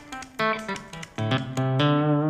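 Hagstrom Impala electric guitar played through an amp with its mute switch engaged: a quick phrase of short picked notes, each one dying away quickly.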